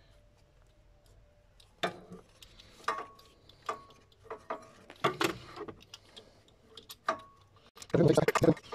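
Sharp clicks and knocks of hands working a spark plug lead onto its plug in a Mercedes A150 engine bay, about six irregular clicks starting about two seconds in, a few with a brief ring.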